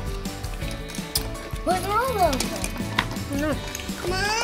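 Background music under children's voices: high, rising-and-falling vocal sounds in the middle and again later, with light clicks and rustles between.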